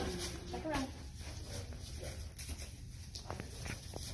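A person's voice briefly, a little after the start, over a steady low background rumble, with two faint clicks late on.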